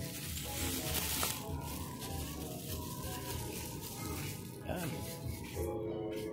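Plastic bubble wrap crinkling and rustling as it is pulled off a small part, loudest in the first second, over background music.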